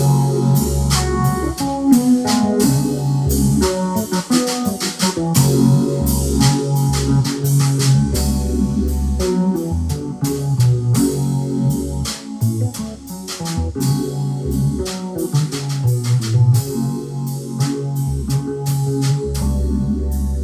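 Live jam of an electronic keyboard and a drum kit: held keyboard chords and low bass notes over steady drum and cymbal hits.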